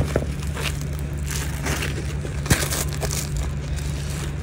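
Thick, shiny metallic fabric and its padded lining rustling and crinkling in the hands as a sewn corset bust piece is turned right side out, with a sharp click about two and a half seconds in. A steady low hum runs underneath.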